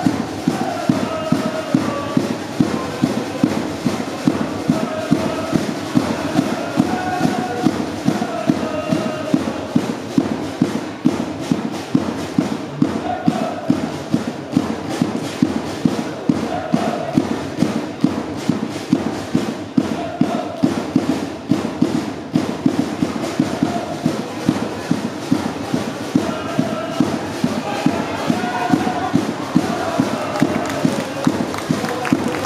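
Soccer supporters chanting in unison to a steady drumbeat.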